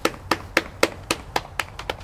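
Steady rhythmic hand claps, about four sharp claps a second.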